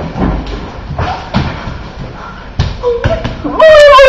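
Running footsteps and thuds on a concrete floor, then near the end a girl's loud squeal, rising in pitch, right at the microphone.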